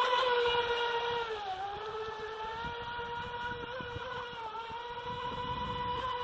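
Feilun FT011 RC speedboat's 4S brushless motor whining steadily at speed, its pitch sagging briefly twice, about one and a half seconds in and again around four and a half seconds.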